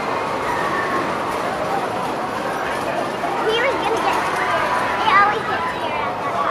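Steel spinning roller coaster's train running along its track, with voices of people around it.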